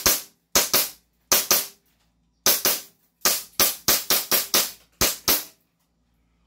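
Gas blowback airsoft pistol firing about sixteen sharp shots in quick irregular succession, some in close pairs, until the magazine runs dry and the slide locks back about five seconds in.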